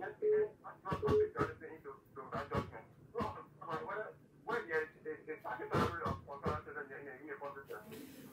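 A caller's voice heard over a telephone line: thin, narrow-sounding speech with a few clicks, fainter than the studio microphone.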